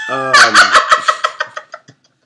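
A woman laughing hard and loud, a quick run of short laughing pulses that weakens and dies out near the end.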